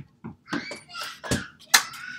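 Household knocks and bangs from small children playing noisily, about five in quick succession, the loudest near the end; a high-pitched cry starts just after it.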